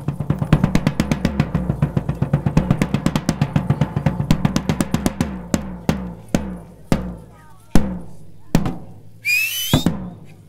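A percussion group led by a stick-struck marching drum plays a fast, dense rhythm that breaks off after about five seconds into single hits spaced further and further apart. Just before the end a brief high, rising call sounds over the hits.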